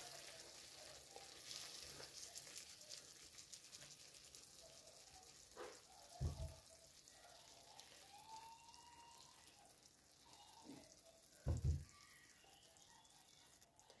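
Faint sizzling of a potato and tomato tajine in a pan on the hob, its water almost all cooked off, as it is stirred with a silicone spoon. Two dull knocks come about six seconds in and again near the end.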